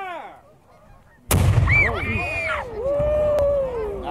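A replica Revolutionary War field cannon fires once, about a second in: a sudden loud boom. Right after it, a flock of waterfowl on the river sets up a clamour of overlapping calls as the birds are flushed by the shot.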